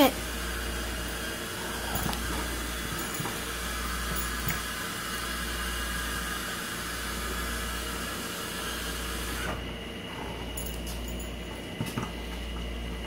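Steady fan-like hiss with a low hum that turns duller about three-quarters of the way through, with a few faint taps as a puppy plays with an ice cube on a vinyl tile floor.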